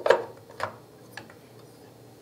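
Eyepiece rack clicking and knocking against the telescope base as it is hooked onto the screw heads through its keyhole slots and pressed into place. A sharp click comes just after the start, then two lighter ticks about half a second apart.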